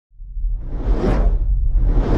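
Logo-reveal whoosh sound effect over a deep rumble, swelling in from silence and peaking about a second in.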